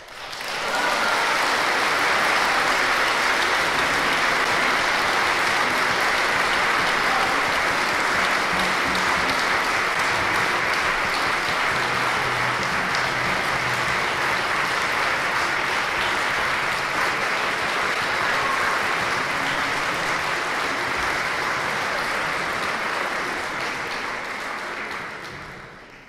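Large audience applauding: the clapping swells up within the first second after the music has ended, holds steady, and fades out near the end.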